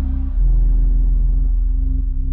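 Music: deep held synth bass notes of an electronic instrumental outro, with no vocals and no beat. The notes change and get louder about half a second in.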